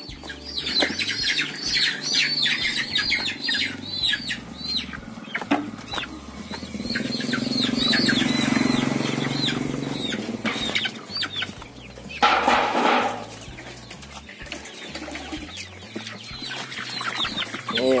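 Young white cockerels crammed into a bamboo basket cage squawking and clucking, with wings flapping and bodies shuffling against the bamboo. The calls come thick and fast over the first several seconds, give way to a swell of rustling in the middle, and thin out towards the end.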